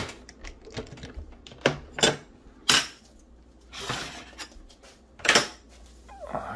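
Hard plastic clacks and knocks as the body of a Redcat SixtyFour RC lowrider is handled and pressed down onto its magnet-mounted chassis: about five sharp knocks spread over the few seconds, with a brief scuffing rustle about two-thirds of the way in.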